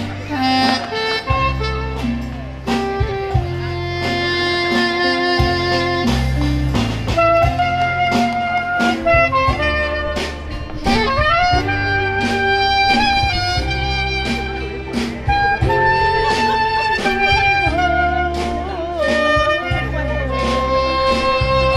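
A soprano saxophone plays a melody live over a backing of bass and drums. The sax notes are held, with a few pitch bends and slides about halfway through and again near the end, while the drums keep a regular beat.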